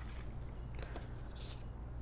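Faint rustles and light ticks of cardstock paper being handled, over a steady low hum.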